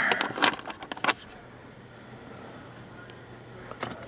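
Coins clicking and clinking against a plastic coin holder in a car armrest organizer tray as they are pulled out by hand: a handful of sharp metallic clicks in about the first second.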